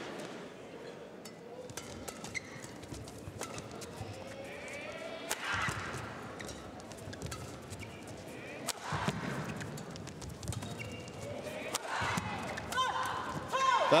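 Badminton rally: sharp clicks of rackets striking a shuttlecock and shoes squeaking on the court mat, the squeaks heard several times in the later part.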